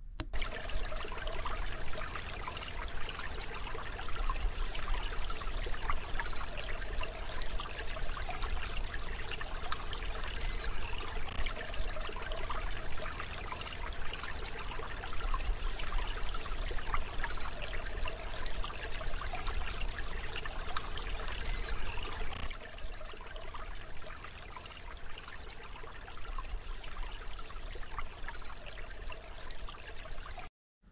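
Steady sound of running water, like a trickling stream, easing slightly in level about three quarters of the way through.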